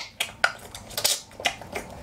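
A string of irregular sharp clicks and crackles, spaced unevenly with quiet between them.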